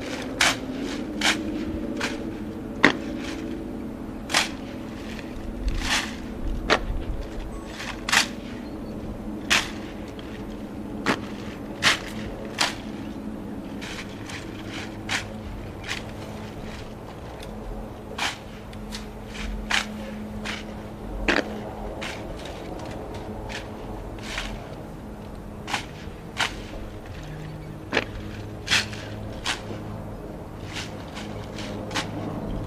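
Sharp, single cracks and slaps of a silent drill platoon's rifle drill: hands slapping M1 Garand rifles and rifle butts and heels striking the ground. They come irregularly, roughly one a second, over a low steady hum.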